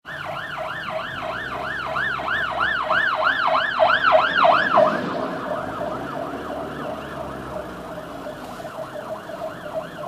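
Fire engine siren in a fast up-and-down wail, about three sweeps a second. It grows louder toward the middle as the truck passes close, then fades as it drives away.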